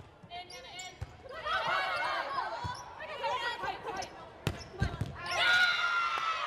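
A volleyball rally on an indoor hardwood court: a sharp ball strike about a second in, players calling out over crowd voices, two more sharp hits of the ball near the end, then a burst of shouting and cheering as the point is won.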